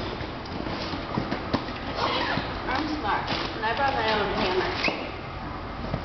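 Mechanism of a crocheted flower sculpture clicking and knocking a few times, irregularly, as its petals are worked open, under voices talking in the room.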